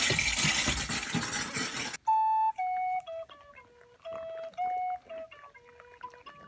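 A loud rushing noise for about two seconds, then a sudden cut to a solo woodwind playing a simple melody of short held notes with brief pauses between them.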